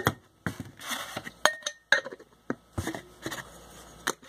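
A glass canning jar and its metal lid being handled on a workbench: a series of sharp clinks and knocks, one of them ringing briefly about a second and a half in.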